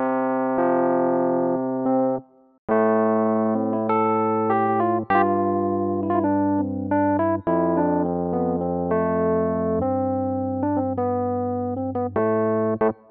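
Logic Pro's Classic Electric Piano software instrument played live from a MIDI keyboard: held chords, a short break about two seconds in, then a run of changing chords and quicker notes.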